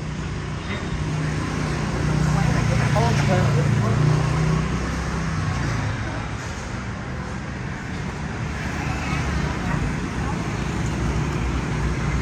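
City street traffic, mostly motorbike engines, with a low rumble that swells for a few seconds as a vehicle passes, then settles back to a steady hum.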